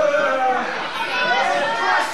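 Spectators' voices calling out and chattering over one another, several at once, with no clear words.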